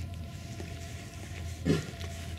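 A Tibetan mastiff gives one short, deep bark near the end, over a steady low background hum.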